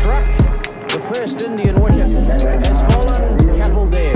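Background music with a steady drum beat and a deep bass line; the bass drops out briefly about half a second in.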